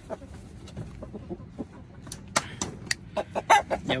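Chickens clucking, with a quick run of short, sharp clicks and snaps from about two seconds in as pliers work the tie wire on chicken-wire mesh.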